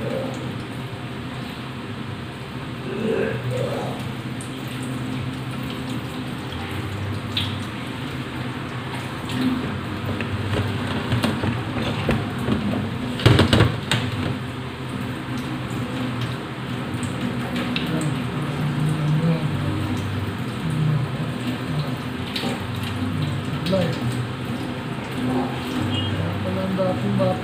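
Wet handling sounds of raw squid being cleaned by hand over steel colanders at a kitchen sink, with scattered small clicks and one sharp clatter about halfway through.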